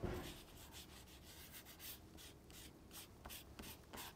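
Soft pastel stick drawn across paper with its flat side, a faint series of short scratchy strokes as colour is laid on the sunflower petals.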